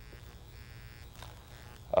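A steady low hum with a faint buzz under quiet room tone, and a man's voice starting to speak right at the end.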